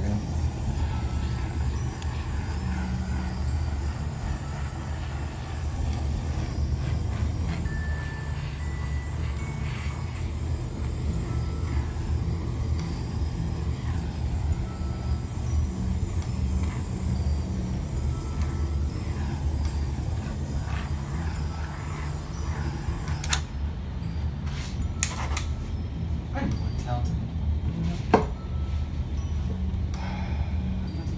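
Handheld heat gun blowing hot air over a wet acrylic pour, a steady whir of its fan and rushing air. It cuts off about three quarters of the way through, followed by a few light clicks and a sharper knock near the end.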